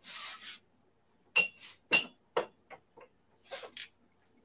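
Espresso tampers being handled on a counter: a short sliding rub, then two sharp clinks with a brief ring about a second and a half in, followed by a few lighter taps and a soft rustle.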